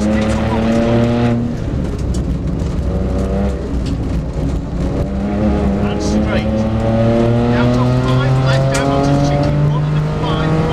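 Rally car's engine heard from inside the cabin under hard acceleration: the revs climb, drop at a gear change about a second and a half in, stay lower for a couple of seconds, then climb steadily again from about halfway.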